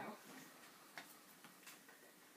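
Near silence: faint room tone with a few soft clicks, about a second in and near the end.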